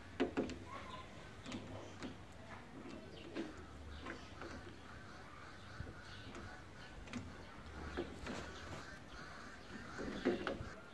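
Faint, scattered metal clicks and taps of pliers and wire clamps being worked onto a battery's terminals, over quiet outdoor background with birds calling.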